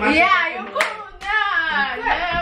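Several young women shrieking and laughing with excitement, with a sharp hand clap a little under a second in.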